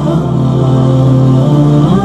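Chant-like intro music with a voice holding long, sustained notes, the pitch changing once about a second and a half in.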